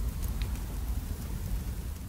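A steady rushing, rain-like noise over a heavy low rumble, with a couple of faint ticks about a third of a second in.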